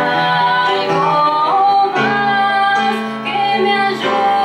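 A woman singing live with piano accompaniment, in long held notes.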